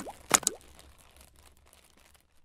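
Logo-intro sound effects: a sharp click, then two quick pops with a short upward-sliding pitch about a third to half a second in, dying away within the first second.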